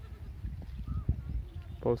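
Low rumble of wind and handling noise on a handheld phone microphone, with one dull thump about a second in. A man's voice starts near the end.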